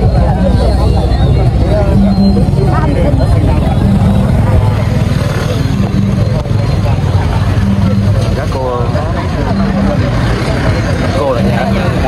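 Outdoor crowd chatter, many voices talking over one another, over a steady low rumble.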